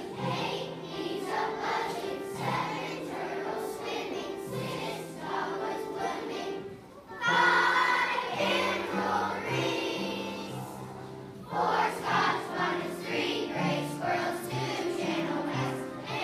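A large children's choir singing with piano accompaniment. The singing dips briefly about seven seconds in and comes back louder.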